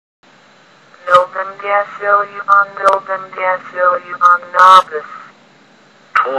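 Synthesized text-to-speech voice (Microsoft Mary) reading English words from a list, here the long word "novemdecillion". It starts about a second in and stops a little after five seconds.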